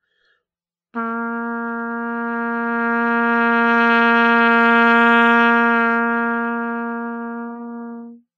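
Trumpet holding one long, steady low note, written bottom C (concert B-flat), entering about a second in. It swells louder to a peak around the middle and then grows quieter before stopping at the end: a crescendo–diminuendo long-note warm-up exercise.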